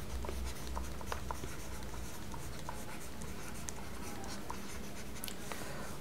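Stylus writing on a pen tablet: faint scattered taps and short scratches as handwriting is written, over a steady low hum.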